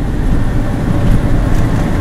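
Car cabin noise while driving: a steady low rumble of engine and tyres on the road, heard from inside the car.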